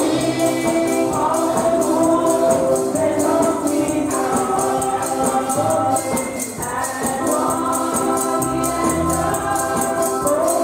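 A group of voices singing a gospel worship song in harmony, with a tambourine keeping a steady, even beat throughout.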